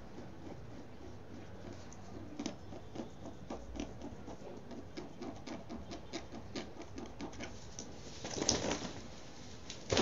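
Fingernails scratching and picking at a DTF heat-transfer print on fabric: a quick, irregular run of small scratches as the print is worked loose. Near the end comes a louder rustle of the cloth being handled.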